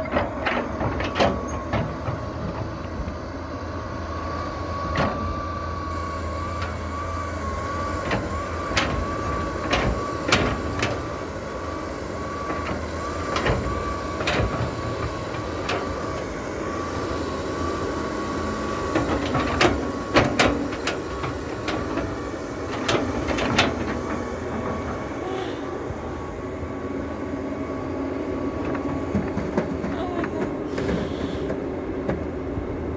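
John Deere 380G tracked excavator working: diesel engine running under load with a steady, slightly wavering high hydraulic whine, and scattered sharp clanks as the bucket digs into a dirt pile and swings.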